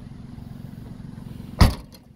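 Rear hatch of a 2015 MINI Cooper Hardtop swung shut, a single loud slam near the end, over a steady low rumble.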